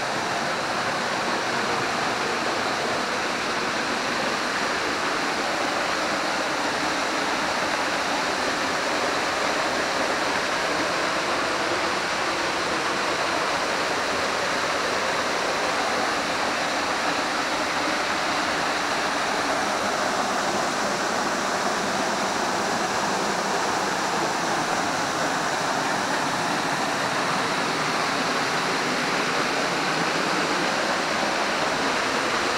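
Waterfall pouring down, a steady rush of falling water that keeps the same level throughout.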